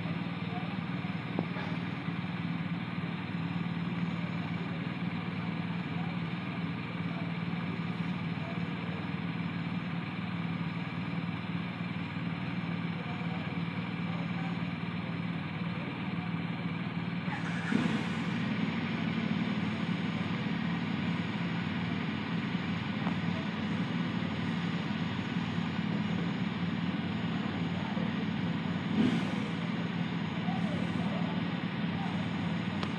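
Motorcycle engine idling steadily, with a slight step up in level just past halfway and a brief blip near the end.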